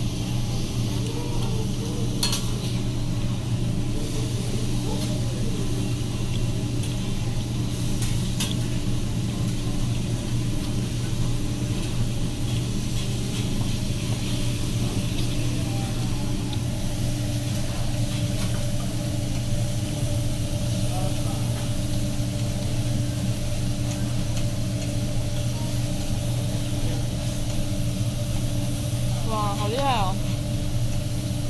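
Meat and vegetables sizzling on a steel teppanyaki griddle, with a few sharp metal clicks from the chef's spatulas, over a steady low hum.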